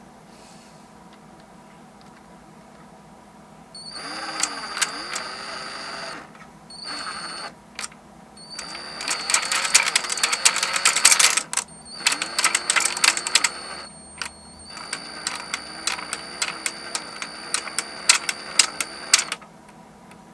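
Cordless drill turning a wooden rotary marble lift in five bursts, starting about four seconds in, its motor whine dipping and rising as the trigger is worked, with glass marbles clicking and clattering through the wooden pockets as they are carried up. The busiest clatter comes in the middle. The lift is picking up the marbles, which works fairly well at slow speed.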